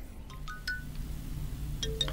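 Short runs of chime notes: three quick rising notes about half a second in, then a lower rising run near the end, over a low steady hum.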